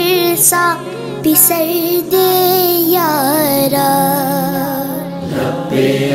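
A boy singing a devotional manqabat in Urdu, a long flowing line with held, wavering notes, over a sustained choir backing. About five seconds in, the solo gives way to the chorus of voices chanting together.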